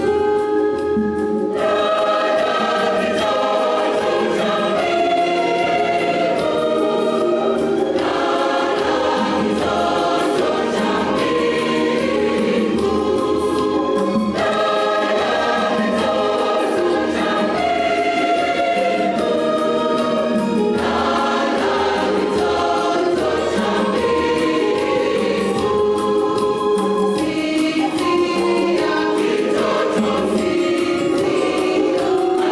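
Large church choir singing a Christmas carol, in long sustained phrases with short breaks between them.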